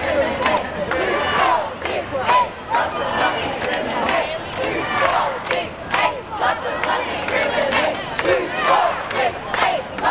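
A large crowd of many voices shouting and calling out at once, overlapping without a common rhythm.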